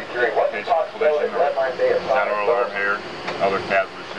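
A man talking over a steady low background hum.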